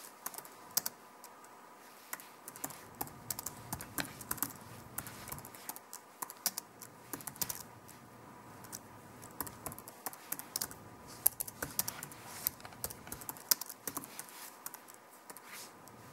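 Typing on a computer keyboard: irregular runs of quick key clicks, broken by short pauses, as a sentence is typed out.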